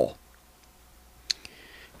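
A single sharp click about a second in, followed by a faint short hiss.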